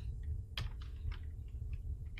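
Computer keyboard keystrokes: a run of light, quick key clicks starting about half a second in, over a low steady hum.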